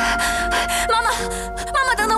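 A young woman gasping for breath in short, breathy bursts for about the first second, then her voice breaking into pitched, wavering cries as she calls after her mother, over soft background music.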